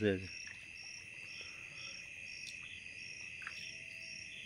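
A night chorus of crickets and other insects: one steady high trill, with a second, higher insect chirping about twice a second on top.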